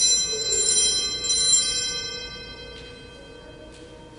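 Altar bells shaken at the elevation of the chalice: a bright, high ringing of several tones, struck again about a second later, then dying away over the next two seconds. The ringing marks the consecration of the wine.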